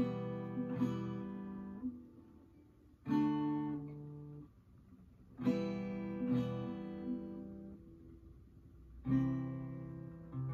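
Acoustic guitar strummed slowly, one chord at a time, in a beginner's chord practice: five strums in loose groups with pauses between them. Each chord is left to ring and die away, and the notes change from group to group as the chord shapes change.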